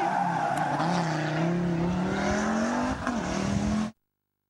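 Audi Quattro rally car's turbocharged five-cylinder engine pulling hard through a hairpin, its note dipping slightly about a second in and climbing again, over tyre noise on the tarmac. The sound cuts off suddenly just before the end.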